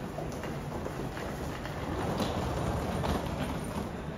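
Subway station platform ambience: a steady low rumble and murmur with scattered footsteps.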